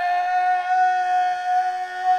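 A man's voice holding one long, high, unbroken note, a sustained yell at a steady pitch.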